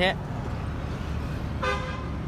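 Steady low rumble of road traffic, with one short car-horn toot near the end.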